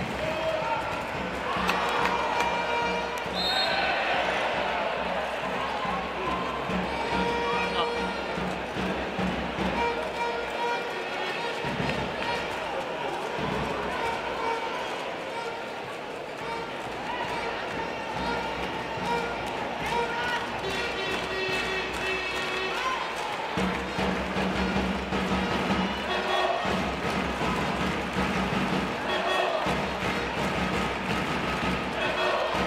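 Indoor arena crowd noise with music, and a handball bouncing on the court floor during play.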